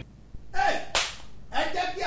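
A man's voice: a brief utterance, then a sudden hissing burst about a second in lasting about half a second, then speech starting up again.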